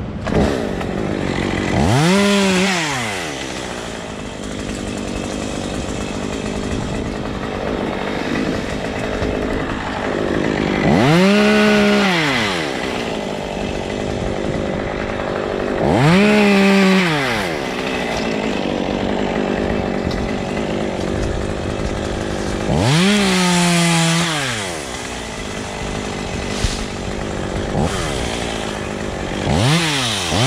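Stihl top-handle chainsaw idling and revved up in short bursts, about five times, each rising quickly in pitch and dropping back to idle.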